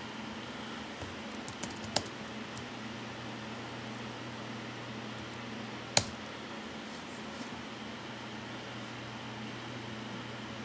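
A few sharp keystrokes on a computer keyboard, the loudest about two seconds in and about six seconds in, over a steady low hum and hiss.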